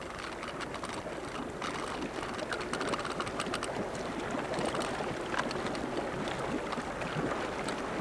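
Water lapping and splashing around a boat on a river, with wind on the microphone: a steady rushing noise full of small crackling splashes.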